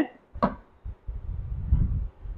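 A glass lid set down on a steel kadai of frying cabbage: a short knock about half a second in, followed by a low, uneven rumble.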